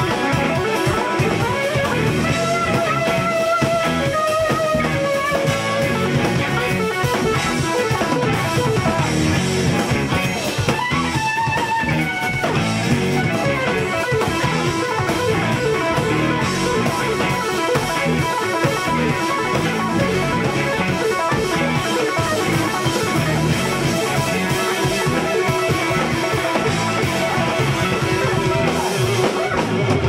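Live instrumental jam-rock played by a full band: electric guitars, bass, keyboards and drum kit, with a lead line of held and bending notes over a steady beat.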